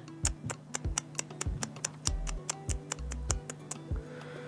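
Background music whose beat is a rapid, even, clock-like ticking, several ticks a second, over faint sustained notes, with a few low bass notes in the second half.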